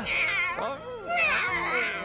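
Cartoon cat meowing in a voice actor's voice: two drawn-out, wavering calls, the second starting about a second in.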